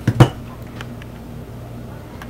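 Two sharp knocks in quick succession near the start, then a steady low hum with a few faint ticks.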